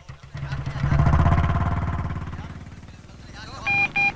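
A motorcycle engine revs up and pulls away, loudest about a second in and then fading over the next two seconds. Near the end, a mobile phone starts ringing with electronic beeps.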